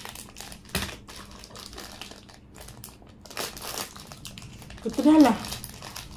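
Plastic food packaging being handled and crinkled in short, irregular rustles, with a louder stretch about three and a half seconds in. A voice speaks briefly near the end.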